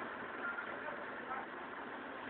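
Steady engine and cabin noise heard from inside a Karosa Citybus 12M city bus.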